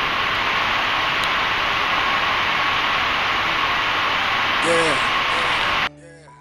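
Steady rushing noise of an airliner cabin, with a faint steady hum in it. A brief voice comes near the end, then the noise cuts off abruptly.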